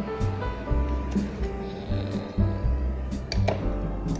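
Background music with held notes over a steady bass beat, with a few light clicks.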